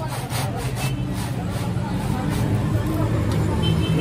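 Metal ice-cream pot being churned by hand in a bed of crushed ice, grinding and scraping against the ice with a repeated rasp, over a steady low hum.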